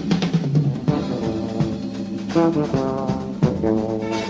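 Live jazz-rock band playing an instrumental passage: electric guitar, keyboards and drum kit, with held chords over regular drum hits.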